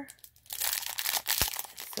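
Clear plastic bag crinkling as fingers squeeze and turn it, starting about half a second in, with one short soft knock near the end.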